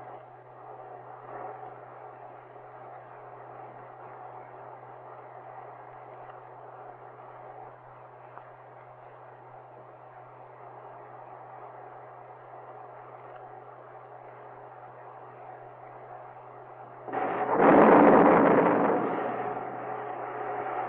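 Faint steady noise over a constant low hum, then about seventeen seconds in a sudden loud explosion that dies away over two to three seconds: a failing missile blown up by remote command from the range safety officer after engine failure.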